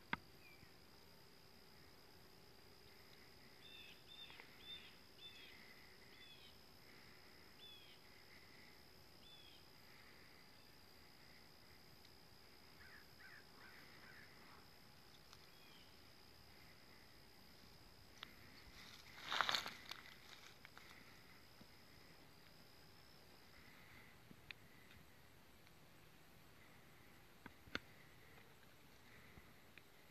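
Near silence outdoors, with a faint steady high tone and a few faint bird chirps, then a single brief louder burst of sound about two-thirds of the way through.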